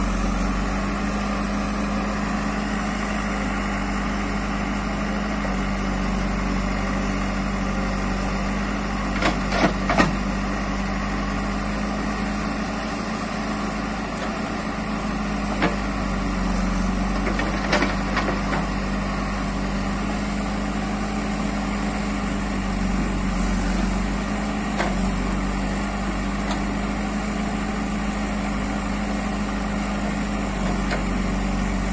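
JCB 3DX backhoe loader's Kirloskar diesel engine running steadily while the backhoe digs. A few short sharp knocks stand out over it, the loudest cluster about ten seconds in.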